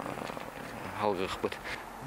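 A man's voice, a short phrase about a second in, between pauses in his speech, over a steady low hum.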